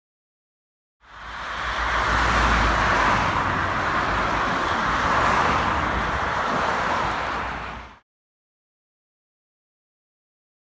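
Road traffic noise from cars driving past on a multi-lane road, a steady rush of tyre and engine noise with a low rumble. It starts about a second in and cuts off suddenly about two seconds before the end.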